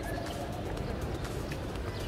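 A bird calling over steady outdoor background noise.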